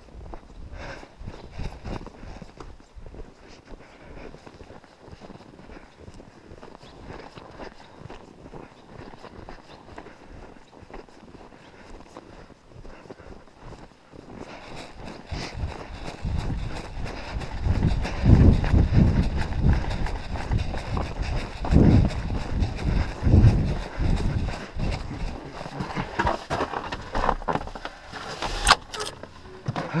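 Footsteps crunching through packed snow at a walking pace. About halfway through, gusts of wind buffet the microphone and drown the steps, and near the end come a few sharp clicks as a door is opened.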